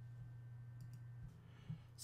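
Very quiet room tone: a low steady hum with a few faint clicks.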